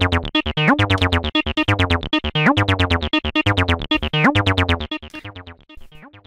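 Cyclone Analogic TT-303 Bass Bot, a TB-303-style analog bass synthesizer, playing a sequenced acid bassline: a fast, even run of short notes with an upward pitch slide that recurs about every two seconds. The notes turn quieter about five seconds in.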